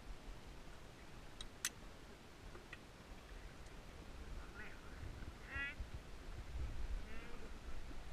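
Metal carabiners clicking as they are clipped onto a climbing harness: a few sharp clicks in the first three seconds, over a low rumble. In the second half come three short warbling cries.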